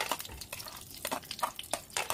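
Chopped almonds and cashews dropping from a plate into a nonstick pan of melted ghee. The nuts land in a scatter of small, irregular clicks and pops.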